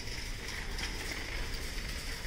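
Background noise of a large store: a steady low hum with a faint hiss, and no distinct events.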